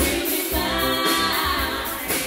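Live soul band playing, with female vocals singing over electric guitar, bass and drums.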